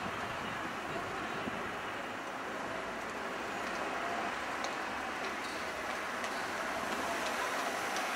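Steady background din, an even hiss strongest in the middle range, with a few faint ticks about halfway through.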